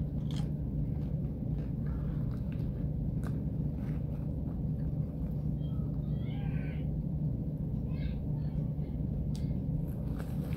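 Boiled cornstarch chunks chewed in the mouth, giving a few soft, scattered crunchy clicks over a steady low rumble. A faint, wavering high-pitched cry comes about six to seven seconds in.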